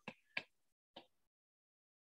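Near silence broken by three faint, short clicks in the first second.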